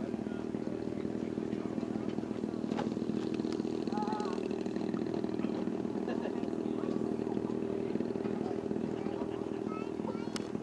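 Engine of a radio-controlled aerobatic model plane running steadily in flight, a continuous drone with little change in pitch.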